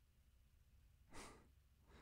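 Near silence, with one short breath drawn close to the microphone about a second in and a fainter one near the end.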